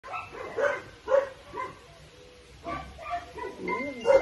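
Dog giving short barks and yips: three close together in the first two seconds, then softer calls, the last one longer with a wavering pitch.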